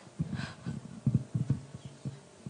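Irregular low thumps, several a second, from a handheld microphone carried by someone walking: footsteps and mic handling noise.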